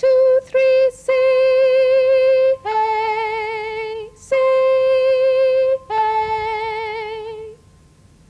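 Hand chimes struck in a slow two-note pattern, C then A, played twice, with a woman singing the note names along with them. A short count-in comes first, and each note is held for about a second and a half.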